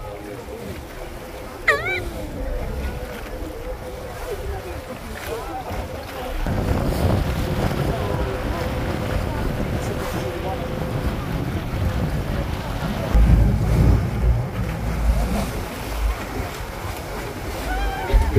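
Tour boat running through open sea, its hull throwing up churning water while wind buffets the microphone. The rush grows louder from about six seconds in, with heavy gusts near the end. A faint steady hum lies underneath until about halfway.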